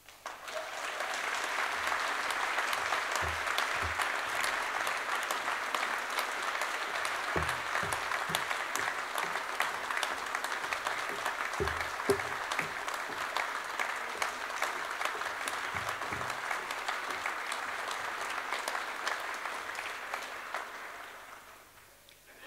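An audience applauding steadily in a large hall, dying away near the end, with a few dull knocks heard through the clapping.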